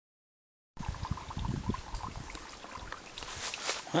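Silence for under a second, then a small woodland spring trickling out of a rock bank, with a few low bumps of the camera being handled.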